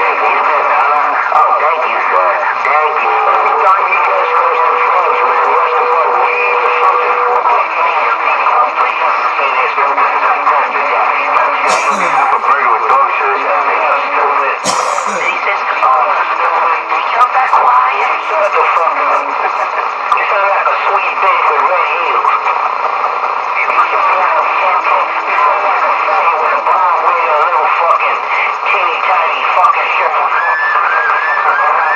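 Continuous muffled, indistinct talk, with two brief sharp clicks about twelve and fifteen seconds in.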